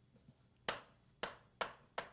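Writing on a board: about four short, sharp taps a few tenths of a second apart, starting a little under a second in.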